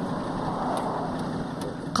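Steady outdoor vehicle and traffic noise with an engine running, as a passenger minibus stands with its door open.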